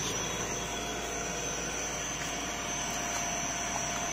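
Electric motor-generator set running steadily: a battery-driven motor turning a three-phase asynchronous (induction) motor used as a generator, giving a constant hum with a thin steady whine over it.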